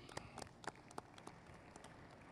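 Light, scattered hand clapping from a few people, fading out after about a second and a half.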